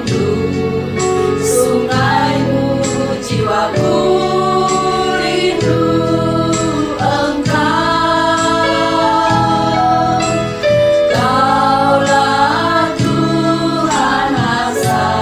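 Several women singing a Christian worship song together as a small group, holding long notes and gliding between them.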